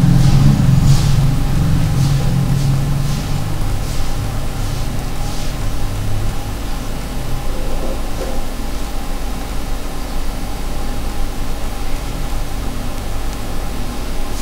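Steady low mechanical hum, like a motor or engine running, louder in the first half and easing off, with a few faint soft swishes.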